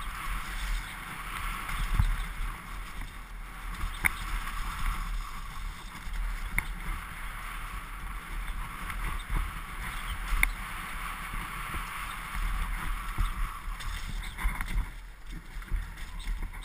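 Downhill mountain bike (a Morewood Makulu) running fast down a dirt forest trail: a steady, rough rush of tyre noise and frame and chain rattle, with wind buffeting the helmet camera's microphone as a low rumble. A few sharp clicks or knocks from the bike stand out, spread through the run.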